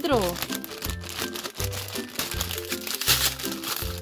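Foil blind-bag toy packet crinkling as hands work it open, loudest a little past three seconds in, over background children's music.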